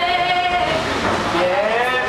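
A woman singing unaccompanied: one long held high note, then notes sliding up and down.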